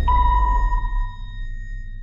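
Closing sound design of an outro sting: a single high electronic ping struck just after the start and ringing away over about a second and a half, over a low rumble that fades down.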